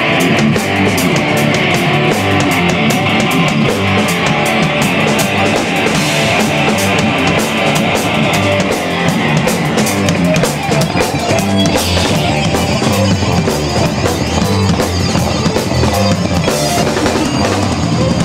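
A rock band playing loud, steady music: electric guitars and bass over a drum kit.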